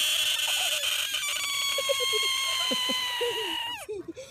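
Bullfrog screaming while held in a hand: one long, continuous high-pitched wail that slowly sinks in pitch and cuts off near the end. This is a frog's distress scream at being grabbed.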